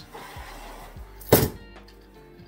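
Expandable baton giving a single sharp metal clack about two-thirds of the way in, its telescoping steel sections snapping together.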